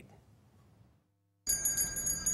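A short gap of near silence, then a small metal handbell starts ringing about one and a half seconds in, shaken with rapid repeated strokes that give bright, high ringing tones.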